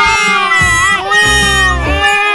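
A high-pitched voice whimpering and crying in long, wavering wails, over background music.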